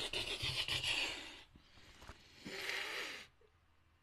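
A rapid drum roll of hands on a wooden tabletop, a dense run of fast scratchy taps lasting about a second and a half. A brief rustle follows near the end.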